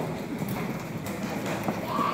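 Audience murmuring, with scattered short knocks.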